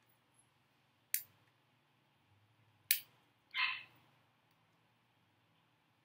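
Two sharp plastic clicks, a little under two seconds apart, from an Ajovy pre-filled autoinjector being handled with its protective cap still on, so it does not press or fire; a short soft hiss follows.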